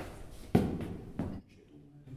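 A man's voice in two short, sudden, loud outbursts, about half a second in and again just after a second in, then quiet.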